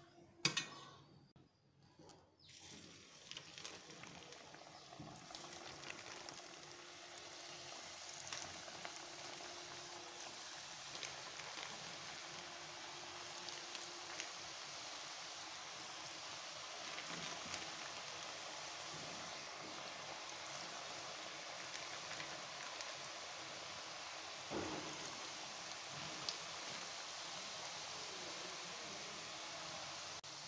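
Coconut-milk murukku deep-frying in hot oil: a steady sizzle that sets in about two or three seconds in, after a couple of short knocks.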